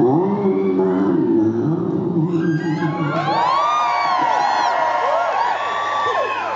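Concert audience cheering and whooping. A voice calls out in the first couple of seconds, then from about three seconds in many high whoops rise and fall over one another.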